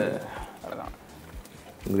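Mostly speech: a voice trails off, then a short, low mumbled vocal sound from someone eating, and talk starts again near the end.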